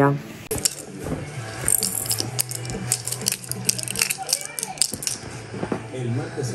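Plastic baby rattle toy shaken in quick, irregular runs of clicks for a few seconds.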